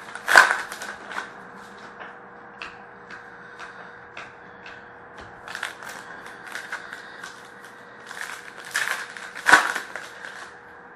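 2013-14 Panini Prizm hockey card pack wrappers being torn open and crinkled while the cards are handled: scattered sharp crackles, loudest in clusters just after the start and shortly before the end.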